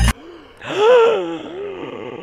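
A person's voiced gasp, one drawn-out vocal sound lasting about a second that rises and then falls in pitch.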